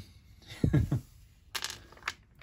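A man's short, low chuckle, followed near the end by a brief hissy burst of noise.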